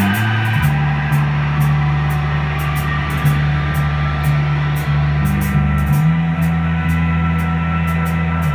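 Live rock band playing: bass guitar holding long low notes that shift a little under a second in and again about six seconds in, over electric guitar, with steady drum and cymbal hits.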